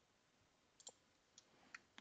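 Near silence with a few faint, short clicks in the second half.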